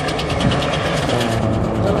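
Rallycross supercar engines running as the cars pass on track, with a rapid crackling through the first second.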